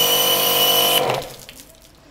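Electric pressure washer motor running with a steady whine, then cutting off about a second in.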